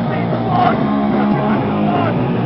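A punk band playing live: distorted electric guitar and a drum kit, with a singer shouting into the microphone.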